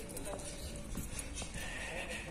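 Footsteps on a concrete sidewalk: a few faint, evenly spaced steps, about two or three a second, over quiet street background noise.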